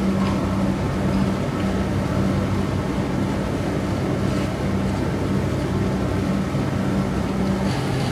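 A vehicle engine idling, a steady low hum that holds at an even level throughout.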